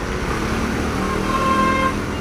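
Road traffic in the background, with one steady held tone starting about half a second in and lasting a little over a second.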